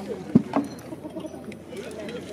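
A sharp knock followed a moment later by a lighter one: a rattan sword blow landing in armoured SCA heavy combat.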